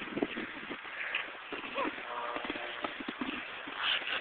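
Snowboard sliding and scraping over snow, with irregular knocks and a louder hiss of snow near the end.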